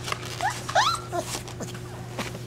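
A puppy whining: about three short high-pitched squeals that rise in pitch within the first second or so, followed by a few soft clicks of the pups moving about.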